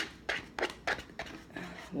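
Rice and chicken being scraped and shaken out of a microwave meal bowl onto a plate: a run of short scrapes, about three a second.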